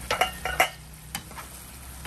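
A few sharp clinks of a pan lid being taken off a frying pan, then the coconut-milk sauce of a chicken adobo simmering at a steady bubble.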